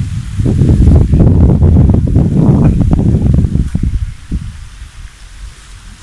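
Wind buffeting the microphone: a loud, gusty low rumble that is strongest for the first few seconds, then eases off.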